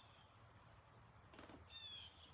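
Near silence outdoors, broken near the end by a faint bird call: a short, falling, whistle-like note.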